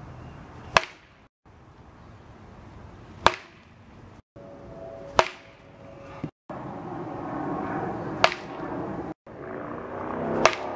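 Four sharp cracks of a baseball bat hitting a ball off a batting tee, spaced two to three seconds apart, with a brief silent gap before each.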